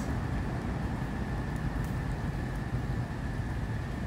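Steady outdoor background noise: an even low rumble with a faint, steady high-pitched tone over it.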